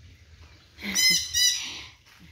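A bird calling twice, two short high-pitched calls close together about a second in.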